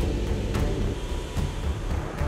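Steady low drone of a KC-130J's turboprop engines and propellers in flight, heard from inside the aircraft.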